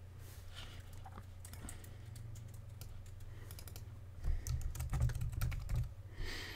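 Typing on a computer keyboard: a run of key clicks over a steady low hum. About four seconds in, heavier low thuds come with the keystrokes for nearly two seconds, the loudest part of the sound.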